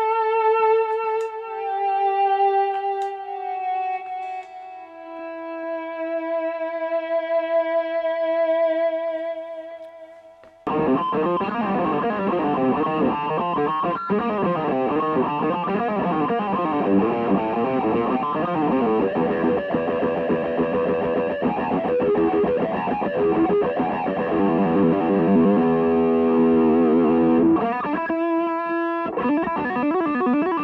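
Electric guitar, a Gibson Les Paul Custom, played through distortion and echo. For about the first ten seconds long sustained notes are swelled in with a volume pedal and slide slowly downward in pitch. Then it cuts abruptly to a fast, dense flurry of notes.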